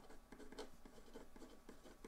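Faint scratching of a felt-tip marker writing on paper, a run of short irregular pen strokes.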